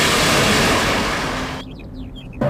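A huge splash of water thrown up by a blast: a loud rush of spray and churning water that slowly dies down, then cuts off suddenly about a second and a half in.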